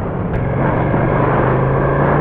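Ducati Panigale V2's 955 cc L-twin engine running at a steady note while riding on an expressway, heavily overlaid by wind buffeting on the helmet-mounted microphone.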